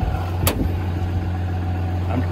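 A Cummins 6.7-litre diesel idling with a steady low hum, and one sharp click about half a second in.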